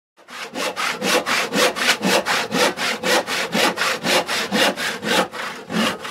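Hand saw cutting wood in even back-and-forth strokes, about four a second, starting just after a moment of silence.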